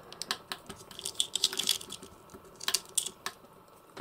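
Irregular small plastic clicks and creaks from the orange bandana piece of a Turtles of Grayskull Michelangelo action figure being twisted round on its head, a little stiff to turn. The clicks cluster about a second in and again near three seconds.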